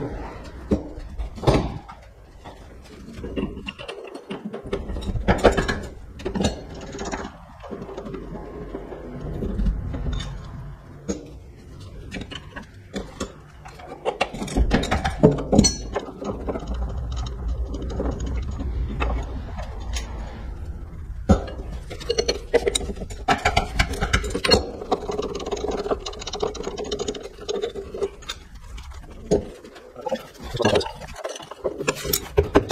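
Irregular metallic knocks, clicks and scrapes of hand tools on the steel frame of a lowbed trailer as its bolted connections are loosened. A steady hum runs through the last several seconds.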